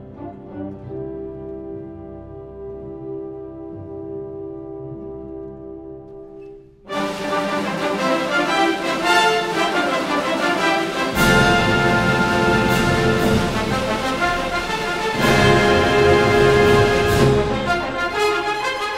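Symphony orchestra playing without voice: a soft, held chord, then about seven seconds in, a sudden loud passage for the full orchestra with brass, growing fuller again about four seconds later.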